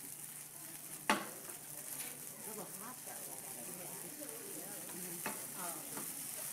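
Brandy sizzling in a hot frying pan as it burns off in a flambé, its alcohol cooking out, with a steady hiss. A sharp knock about a second in, and a smaller one near the end.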